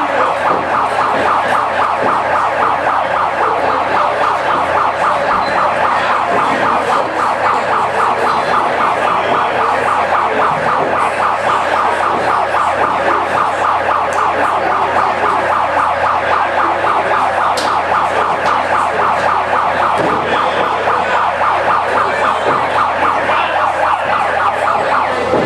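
An emergency-vehicle siren sounding steadily and loudly in a fast, rapidly repeating yelp.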